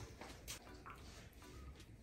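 Chow chow chewing a small piece of coxinha taken from a hand: a few faint, soft mouth clicks and chewing sounds over near silence.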